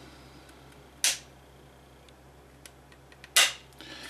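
Trigger mechanism of a CZ Scorpion EVO 3 S1 carbine being dry-worked by hand: two sharp clicks about two seconds apart, with a few faint ticks between them.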